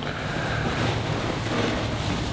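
Clothing rustling as a dress is pulled on over the head, heard as a steady rushing noise.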